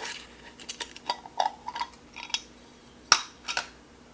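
Metal screw lid being unscrewed and taken off a glass mason jar: a run of light scrapes and clicks, with one sharp click about three seconds in.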